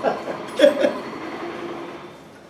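A man's short laugh about half a second in, followed by a faint steady hum.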